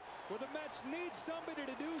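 Faint speech at a low level, most likely the game broadcast's commentary playing quietly under the footage.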